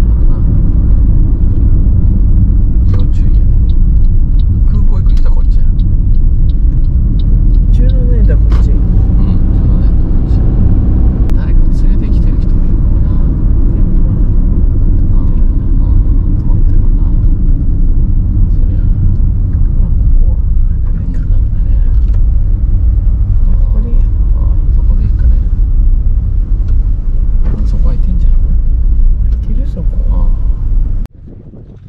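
Steady low road and engine rumble inside a compact car's cabin as it drives along.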